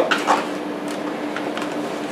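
Handling and unwrapping of a parcel's packaging, with faint rustling and scraping, over a steady low hum.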